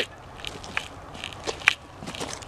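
Footsteps on loose gravel, a handful of short scuffs and crunches, the loudest near the end.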